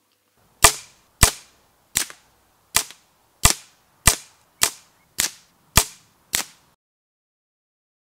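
Pre-charged pneumatic .177 air rifle, the FX Dynamic, firing ten shots in quick, even succession, about one every 0.6 seconds. Each report is a sharp crack with a short decay, and the string stops abruptly near the end.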